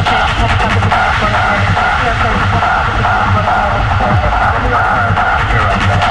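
90s-style hard techno track: a driving, evenly repeating kick drum under a wavering synth riff. The hi-hats drop out shortly after the start and come back near the end.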